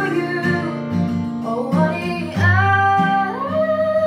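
A woman singing to her own strummed acoustic guitar, with a long held note near the end.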